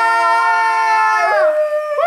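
Several young men's voices holding a long, loud note together, a drawn-out sung or shouted "aaah". They break off about a second and a half in, and one voice carries on with a single held note.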